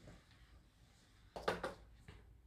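Mostly near silence, then two or three short, faint scuffs about a second and a half in. A framed picture is lifted from the tiled floor and a Swiffer duster is brushed beneath it.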